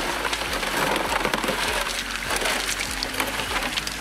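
Water from a high banker's spray bar rushing over the classifier screen and down the sluice, with gravel and small stones clicking and clattering as they are washed through.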